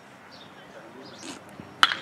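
Quiet open-air ambience, then near the end a single sharp crack of a baseball bat hitting the ball squarely: a hit that carries over the fence for a home run.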